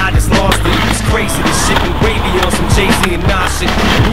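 A skateboard lands a jump off a ledge and rolls over paving slabs, with sharp clacks of the board. A hip-hop track plays over it.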